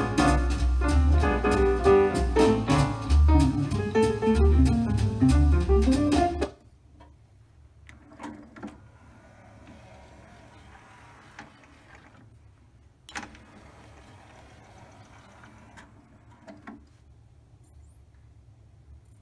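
Song playing from a NAD 523 multi-disc CD player, cut off abruptly about six seconds in. Then, faintly, the player's belt-driven drawer mechanism runs with several clicks as the disc tray opens and closes again, working on its replaced belt.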